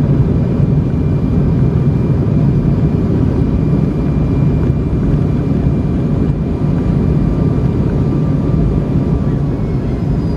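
Cabin noise of a Boeing 757 rolling down the runway after landing: a steady roar and rumble from its Rolls-Royce RB211 jet engines and the wheels on the runway, with a faint steady whine above it.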